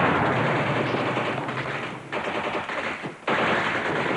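Machine-gun fire in rapid, continuous bursts, broken by two short pauses about halfway through and a little after three seconds in.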